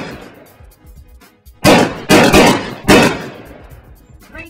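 Logo-sting sound effect on the outro: three loud, sharp hits in close succession about one and a half to three seconds in, each dying away, with the fading tail of an earlier hit at the start.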